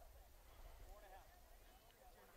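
Near silence: faint, distant voices calling across the field over a low steady hum.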